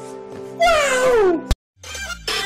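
Background music with steady held notes, and a single drawn-out vocal cry falling in pitch just over half a second in. Near the end the sound cuts off with a click and a moment of silence.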